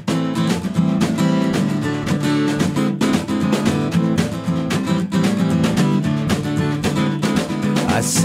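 Background music: strummed acoustic guitar playing a steady rhythm.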